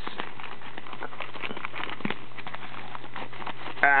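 Fingers picking and scratching at the plastic shrink wrap on a trading-card box, making scattered small crinkles and crackles over a steady low hum. A short vocal 'ah' of effort comes near the end.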